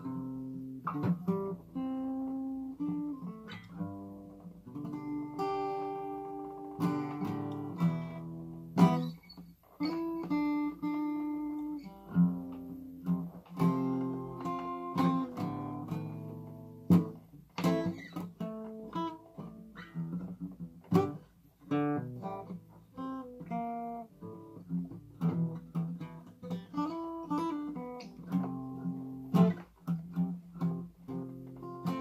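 Alvarez acoustic guitar played solo: a jam over A minor, mostly A minor pentatonic lead lines with a few major-scale notes, mixed with chord strums.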